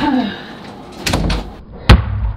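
A door slammed shut with a single sharp, loud bang near the end, after a duller thud about a second in.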